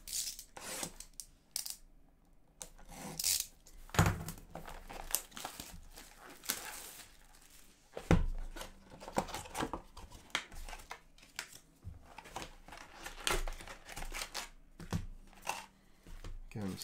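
A sealed Upper Deck SP Authentic hockey card box being torn open: wrapping and cardboard ripped and crinkled in uneven rips, with a couple of dull thumps about four and eight seconds in.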